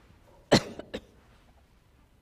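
A person coughing: one loud cough about half a second in, then a shorter second cough.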